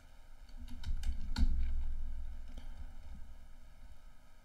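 A few sharp clicks of typing on a computer keyboard, the loudest about a second and a half in, over a low rumble that fades away.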